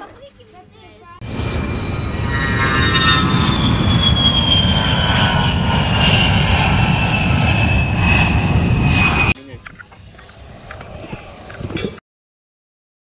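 A jet airplane flying overhead: a loud engine roar with a high whine that slowly falls in pitch. It starts about a second in and cuts off suddenly about nine seconds in.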